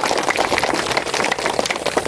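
A crowd applauding, many hands clapping at once in a dense, steady patter.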